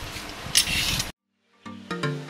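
A vegetable peeler scraping along a raw carrot, with one louder stroke about half a second in. After a brief dead silence, background music with a steady beat starts near the end.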